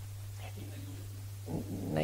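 A steady low electrical hum, with a faint, indistinct voice about half a second in. Near the end a man's voice starts up close to the microphone.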